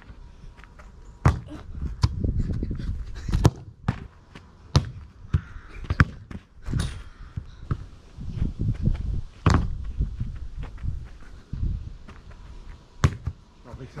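Football being kicked and bouncing on a grass lawn: irregular sharp thuds a second or more apart, with a low rumble between them.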